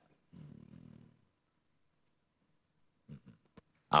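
A pause in a man's speech: a faint, low murmur from his voice for under a second, then quiet, with a few small mouth sounds shortly before he speaks again.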